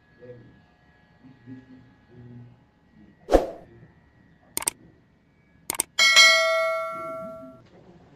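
Subscribe-button sound effect: a sharp hit, then a click and a quick double click, then a bell ding that rings for over a second and fades away.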